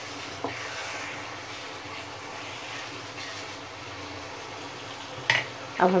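Green chicken masala sizzling steadily in oil in a non-stick pan, the bhuna frying finished and the oil separated from the masala. A light knock comes about half a second in and a sharper one about five seconds in.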